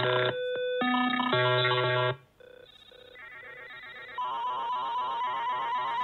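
Synthesized electronic tones from a malware payload, blocks of steady beeping notes that change pitch every half second or so. They cut off about two seconds in, and a quieter layer of repeating chiptune-like beeps builds up over the rest.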